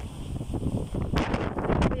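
Strong cyclone wind buffeting the phone's microphone in gusts, rumbling low and rising to a louder gust about a second in.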